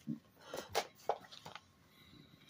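Faint handling noises: a handful of short clicks and rustles as a paper user manual is picked up and brought forward.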